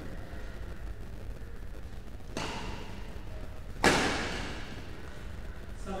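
Badminton racket hits on a shuttlecock during a rally in an echoing hall. There is one hit about two and a half seconds in and a louder, sharp hit near four seconds that rings on for about a second, over a steady hall background.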